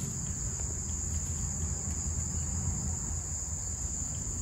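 Steady, high-pitched chorus of summer insects buzzing without a break, with a low rumble underneath.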